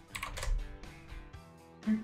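Computer keyboard keystrokes, a scatter of light clicks, over a quiet background music bed. Near the end a synthesized chatbot voice starts speaking from a small speaker.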